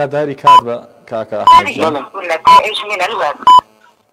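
Quiz-show countdown timer beeping once a second, four short high beeps, with a voice talking between them.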